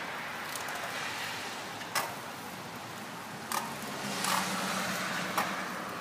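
Steady faint outdoor background hiss with a few sharp clicks, and a low hum that comes in and swells slightly about two-thirds of the way through.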